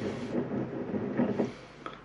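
A tall beer glass swirled against a hardtop table, its base grinding and rumbling on the surface to release the beer's aromas. The rumble stops about a second and a half in, and a single short click follows near the end as the glass is lifted.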